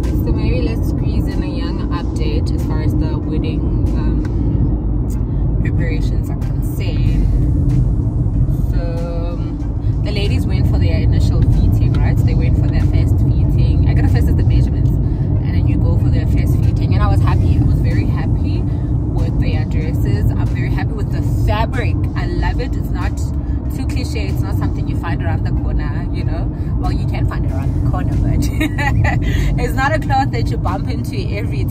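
Car cabin noise while driving: a steady low rumble of the engine and tyres on the road, with faint voice-like sounds now and then above it.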